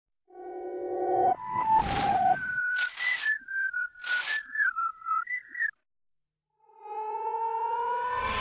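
Cartoon studio logo jingle: a short held tone, then a whistled tune with two whooshes, cutting off about six seconds in. After a brief silence, music fades in near the end.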